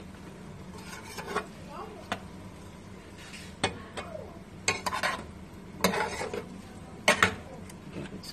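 Metal spoon stirring beef chunks and vegetables in a nonstick frying pan, with irregular clinks and scrapes against the pan that come thicker and louder in the second half. A low steady hum runs underneath.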